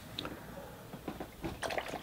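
A paintbrush being rinsed in a water container: faint liquid swishes and a few small clicks, more frequent in the second second.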